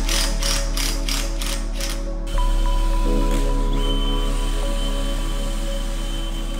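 Cordless impact driver hammering a screw into a handrail bracket: a rapid, even series of clicks that stops about two seconds in. Music plays throughout.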